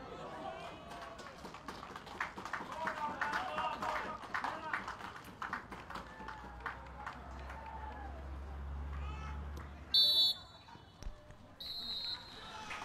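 Voices of players and spectators calling out across the football pitch. Then, near the end, a referee's whistle blows twice: the full-time whistle.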